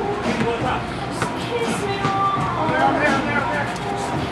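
Overlapping shouts and chatter of several people during a pickup basketball game, with faint music.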